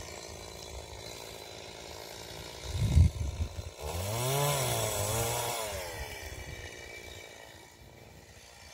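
A chainsaw revving up and back down twice, its pitch rising and falling, over a low steady rumble, with a short thump just before it.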